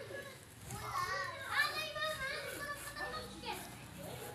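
Children's voices: high-pitched chatter and calling, loudest from about one to two and a half seconds in.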